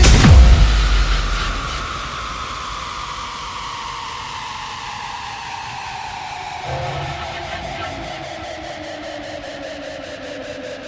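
Tekno track going into a breakdown: the pounding kick drum and bass cut out about half a second in, leaving a quieter wash of noise with a synth tone slowly falling in pitch. A low swell comes in near the end, with fine rapid ticking high up.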